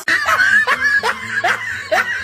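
A person laughing in a string of short bursts, about three a second.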